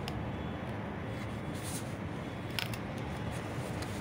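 A few brief, faint scratches of a pencil drawn along a PVC pipe to mark a cutting line, over a steady low background hum.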